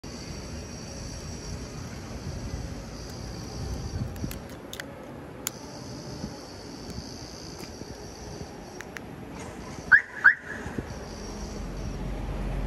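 Aftermarket car alarm on a Mitsubishi Strada pickup chirping twice in quick succession, answering its key-fob remote.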